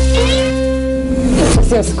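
TV show jingle: a held musical chord with short rising glides near the start, ending about one and a half seconds in.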